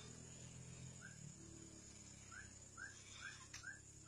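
A bird calling faintly in short rising chirps: one about a second in, then a quick run of five at about two or three a second from just past the middle, with a single sharp click near the end.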